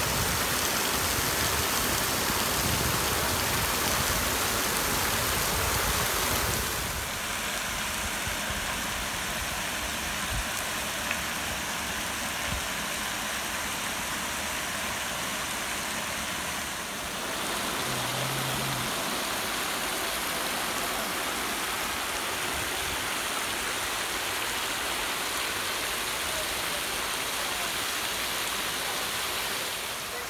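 Water from a fountain's rows of fine jets falling and splashing into its basin, a steady rushing patter like rain. Its level steps down slightly about a quarter of the way in and shifts again a little past halfway.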